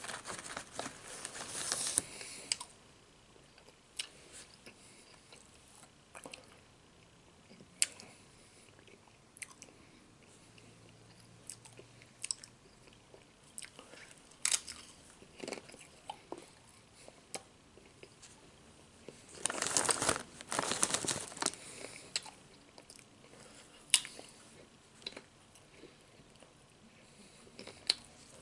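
Close-up crunching and chewing of Nacho Cheese Doritos tortilla chips: sharp, separate crunches spaced out between quiet stretches of chewing. The chip bag crinkles near the start as a hand reaches into it, and there is a longer, louder burst of crackling about twenty seconds in.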